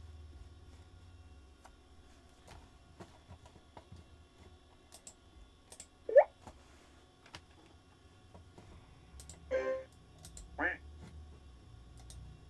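Classic Mac OS alert sounds, sampled one at a time from the Alerts list on a Power Macintosh all-in-one, amid mouse clicks. About six seconds in comes a short, loud blip that rises steeply in pitch, then two more short alert sounds near ten seconds. They play through the machine's own speaker, which sounds awful.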